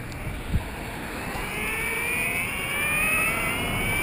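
Electric skateboard motor whining, rising steadily in pitch as the board speeds up, over the rumble of its wheels on the road. One thump about half a second in.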